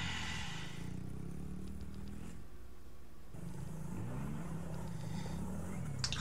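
A small vehicle's engine running and revving up and down, broken by a short gap partway through.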